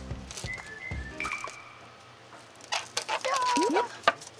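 Light background music fades out in the first second or so. Near the end comes a quick run of rattling shakes from a salt shaker whose salt has clumped with moisture, under a comic whistling sound effect that ends in rising slides.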